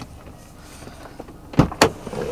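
Two sharp clicks about a fifth of a second apart, a second and a half in, from the Nissan Navara's driver's door latch being released from inside the cab.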